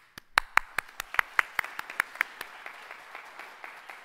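Congregation applauding: a run of sharp, loud claps at about five a second over a wash of scattered clapping, thinning out and fading toward the end.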